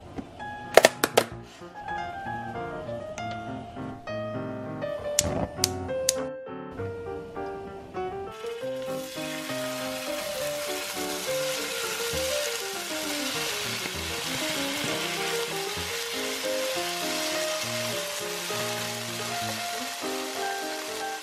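Background music, with a few knocks in the first seconds. About eight seconds in, cubes of marinated tofu go into a hot frying pan and start to sizzle, a steady hiss under the music.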